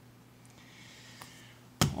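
Faint rubbing of a terry cloth on the plastic sensor window of a robot vacuum's bumper, then one sharp click near the end.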